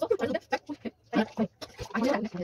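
Short, broken-up vocal sounds from young women, a string of brief voiced bursts with gaps between them.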